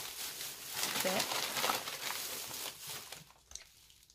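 Shopping bags crinkling and rustling as someone digs through them, trailing off after about three seconds.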